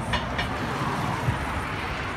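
A car passing on the street, a broad rush of tyres and engine that swells toward the middle and then eases. A low thump comes just after halfway.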